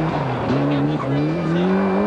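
Ford Escort RS Cosworth rally car's turbocharged four-cylinder engine pulling hard. Its pitch drops at quick upshifts about half a second and a second in, then climbs again.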